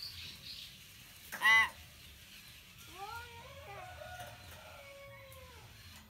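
Common hill myna giving one loud, short call about one and a half seconds in, followed by a quieter run of gliding, whistled notes from about three seconds in.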